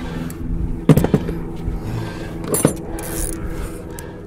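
Pliers clicking and scraping on a vacuum hose and its clamp as the hose is worked off an engine's intake plenum, with two sharper clicks, about a second in and just past halfway.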